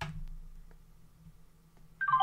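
A single click as the RAGU T2 portable PA speaker is switched on by holding its power button, followed by a faint low hum that fades away within about a second and a half.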